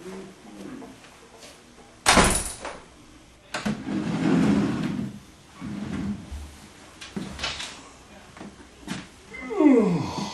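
A door bangs shut about two seconds in, followed by quieter knocks and rustling. Near the end a man gives a long, breathy vocal sound that falls in pitch, like a sigh.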